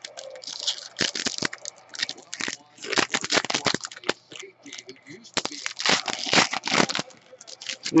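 Foil wrapper of a trading-card pack crinkling and tearing in several bursts of rustling, loudest about a second in, around three seconds in and from about five and a half to seven seconds in, as the pack is opened and handled.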